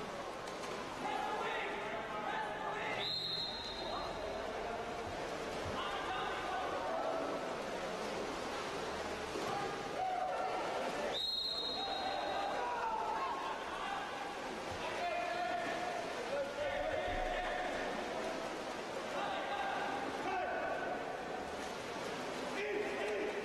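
A referee's whistle blows twice in a water polo game, two sustained blasts about eight seconds apart, over players and spectators shouting around the pool.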